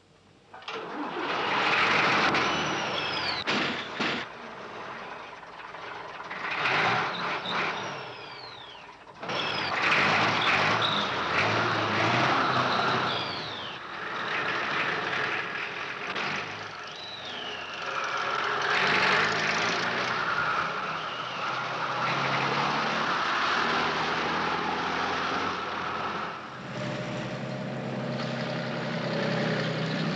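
A tipper lorry's engine starts and runs hard as the lorry pulls away, surging in loudness several times. It is cut through by several high squeals that fall in pitch.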